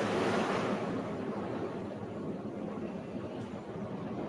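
Steady rushing noise from an open microphone on a video call, cutting in suddenly and easing off slightly over the seconds.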